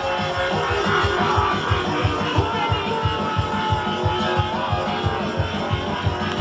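Drum and bass music from a DJ set: a fast, dense run of drum hits over bass, with gliding, wavering synth lines above.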